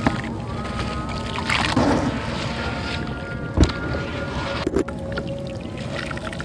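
A chunk of wet sandy clay being squeezed and crumbled by hand into a tub of water, with gritty crumbling and splashing, and a sharp knock about three and a half seconds in. Background music with steady held tones plays under it.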